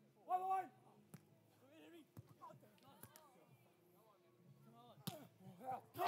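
Beach volleyball rally heard faintly: a player's short shout near the start, then four sharp slaps of hands and arms on the ball spread a second or so apart, with faint calls between them.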